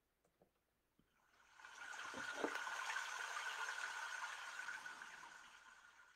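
A rushing noise, with a steady whistle-like tone in it, swells up about a second and a half in and fades away near the end, after a few faint clicks.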